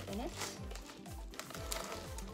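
Metallic plastic bubble mailer crinkling as it is handled and opened, over background music with a steady beat.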